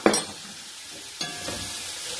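Carrots and green beans sizzling steadily in hot oil in an aluminium pot over a high gas flame. There is a sharp tap right at the start, and a utensil starts stirring the vegetables a little after a second in.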